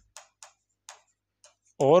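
A few faint, sharp ticks of a stylus tip striking and dragging on a smart-board touchscreen as a word is handwritten, then a short spoken word near the end.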